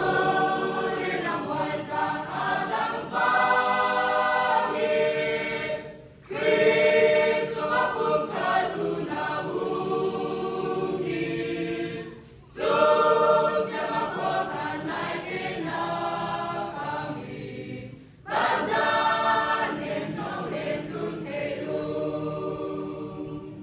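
Mixed church choir of men and women singing a hymn together, in phrases of about six seconds with short breaks for breath between them.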